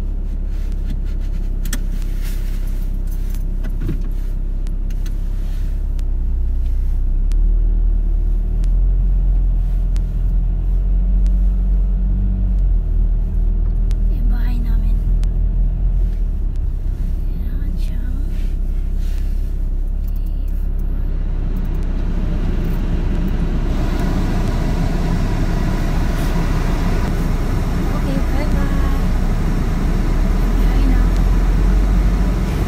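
A car's engine and road noise heard from inside the cabin as it pulls away and drives on. The engine note rises and shifts as it gathers speed, and in the second half a steadier hiss of tyre and road noise grows.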